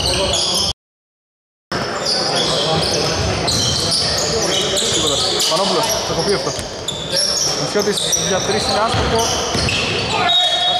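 Basketball game on an indoor hardwood court: many short sneaker squeaks, the ball bouncing, and players' voices echoing in the hall. The sound drops out completely for about a second just after the start.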